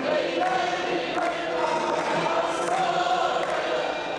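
A crowd of many voices singing together, with long held notes.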